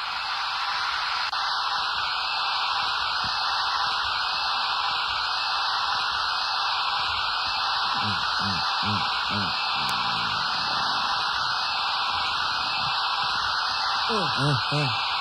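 A loud, steady wash of synthesized white noise, like static, filtered so that a gap runs through it, in a breakdown of an early-1990s acid/hardcore techno track. About two-thirds of the way through, a few low bouncing tones rise and fall underneath it.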